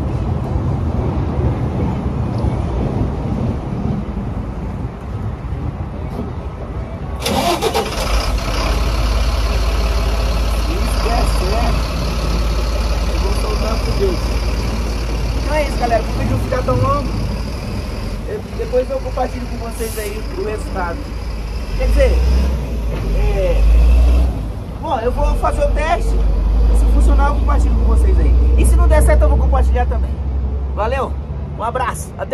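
A motor vehicle's engine starts abruptly about seven seconds in and keeps running close by with a deep rumble, over a steady background engine hum. People talk over it from about the middle on.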